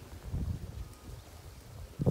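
Wind buffeting a phone's microphone: an uneven low rumble that comes and goes.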